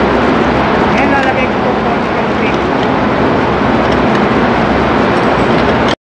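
Loud, steady machinery noise of a ship's engine room, where diesel generators run. A voice is faintly heard over the din about a second in and again about two and a half seconds in.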